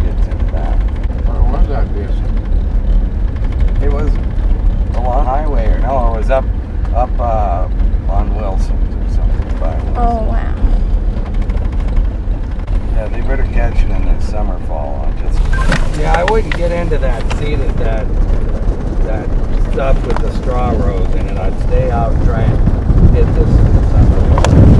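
Steady low rumble of a Chevrolet pickup truck driving, heard inside the cab. About fifteen seconds in it gives way to wind buffeting the microphone outdoors.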